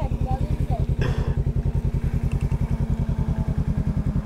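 Yamaha MT-09 three-cylinder engine with a full aftermarket exhaust idling, a steady, fast, even pulsing from the pipe.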